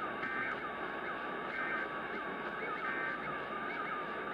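Emergency Alert System end-of-message code: three short digital data bursts about a second apart, marking the end of the monthly test. They play through an AM radio's small speaker over a steady hiss of static.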